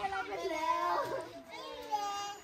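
Several children's voices calling out and talking over one another, high-pitched.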